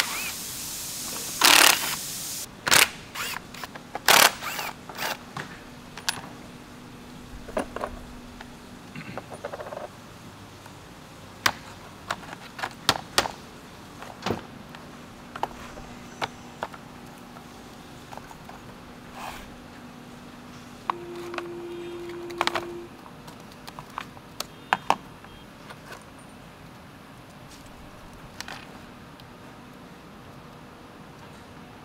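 A cordless power driver runs briefly to back out T30 Torx screws from a car radiator fan shroud, with a second short whir about two-thirds of the way in. In between come many sharp clicks and knocks of screws and plastic fan parts being handled on a metal bench.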